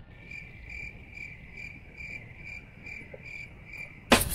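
Faint electronic beeping: a short high-pitched beep repeating evenly about twice a second, steady in pitch.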